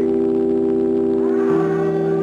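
Organ holding a sustained chord, changing to a new chord with a lower bass note about one and a half seconds in.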